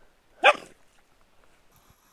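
A Finnish Spitz gives a single short, sharp bark about half a second in.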